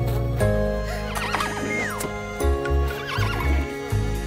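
A cartoon pony's whinny over background music: a wavering neigh about a second in that ends with a falling glide, and a shorter one a little before the end.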